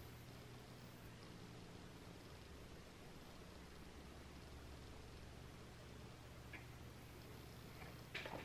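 Near silence: room tone with a faint steady low hum, and one faint tick about six and a half seconds in.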